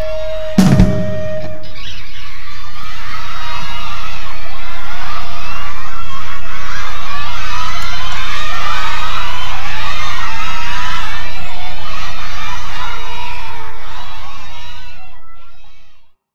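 A rock band's final hit closes the song under a second in, while a held note rings on and stops at about two seconds. Then the audience cheers and screams, the sound swelling and then fading out near the end.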